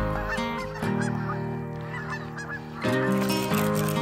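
Geese honking, a run of short calls one after another, over steady background music.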